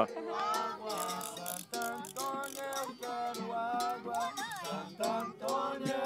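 Live capoeira music: voices singing a stepping melody over regular percussion strikes and rattles.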